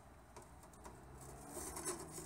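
Quiet pause: faint background sound with a few soft clicks and a light hiss building toward the end.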